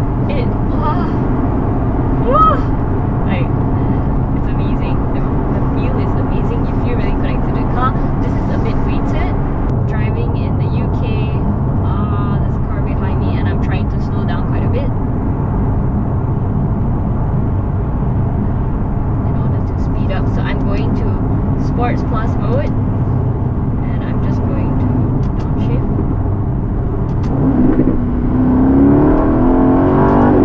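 Aston Martin DB11's 4.0-litre twin-turbo V8 heard from inside the cabin, running steadily at cruise. Near the end the engine note rises and grows louder as the car accelerates hard.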